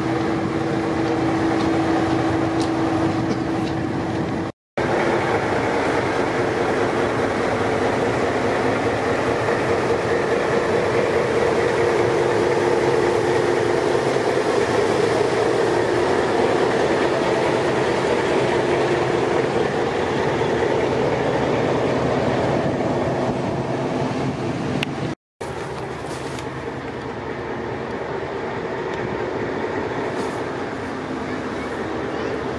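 NS 2200-class diesel locomotive 2278 running steadily as it hauls a train of vintage carriages slowly past, with a held engine hum. The sound cuts out briefly twice, and is a little quieter after the second break.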